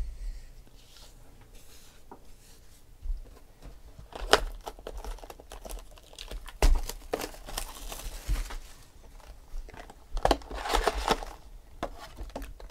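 Plastic shrink-wrap being picked at, torn and crumpled off a cardboard trading-card box, in scattered crackling bursts that are loudest near the end as the box is opened.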